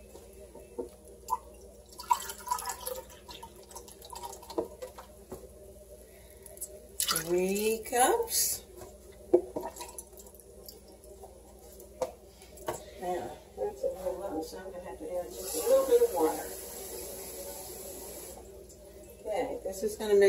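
Chicken stock being poured, a steady stream of liquid running for about three seconds late on, with a few light clinks and knocks of kitchen handling.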